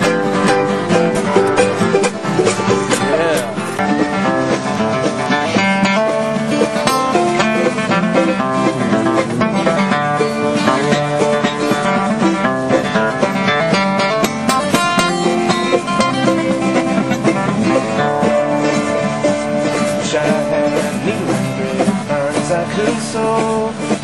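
Acoustic string-band jam: several acoustic guitars strummed and picked together in a steady, busy instrumental, with no singing.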